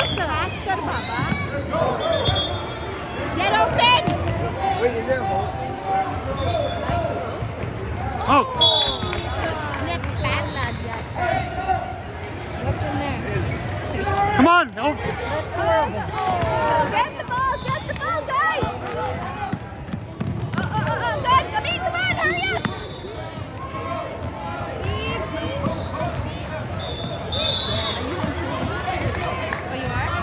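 Basketball play on a hardwood gym court: a ball bouncing, short high squeaks of sneakers, and spectators talking and calling out.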